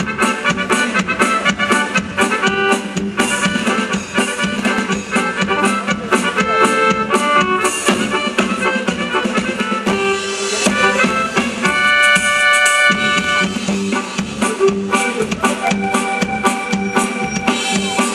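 Loud live band music: an accordion playing a melody and held chords over a steady drum-kit beat.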